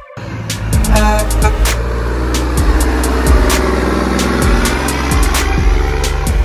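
Background music with a steady electronic drum beat, mixed with the running engine of a tanker semi-truck driving past.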